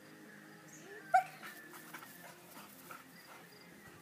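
A dog gives one short, sharp yelp about a second in, in its excitement at being released to run an agility jump.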